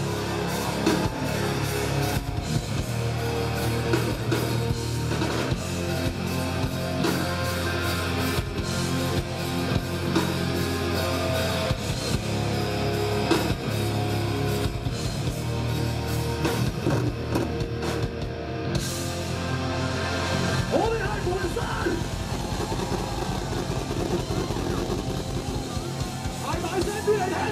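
Hardcore rock band playing live: distorted electric guitars, bass and drums in a heavy instrumental passage, with steady drum hits throughout.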